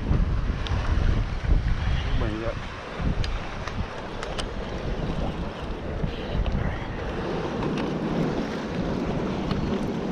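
Wind buffeting the microphone over the wash of surf against a rock ledge. A few sharp clicks come in the middle.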